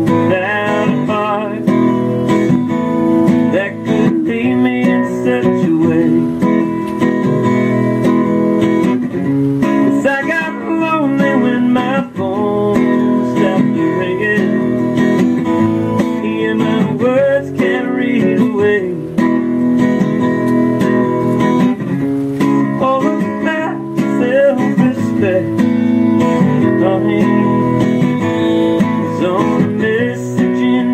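Acoustic guitar strummed steadily, playing the chords of a slow song.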